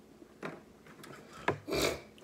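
A boiled crawfish being twisted and peeled by hand: the shell rubs and crackles, with a sharp crack about one and a half seconds in and a louder crunching rasp just after.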